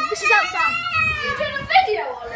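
Children's voices: high-pitched calls and shouts with no clear words.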